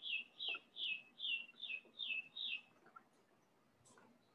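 A songbird singing a run of repeated down-slurred chirps, about two and a half a second, that stops after about seven notes.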